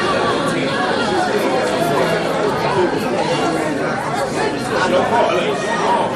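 Many voices talking over one another in a steady, overlapping chatter, too tangled for single words to be made out.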